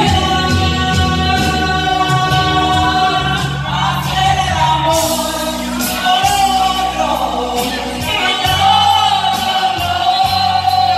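Two women singing together into hand-held microphones over a karaoke backing track, their voices amplified through speakers and holding long notes.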